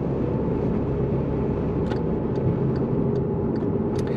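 Steady road and engine noise inside a moving car's cabin, with a low hum and a few faint clicks in the second half.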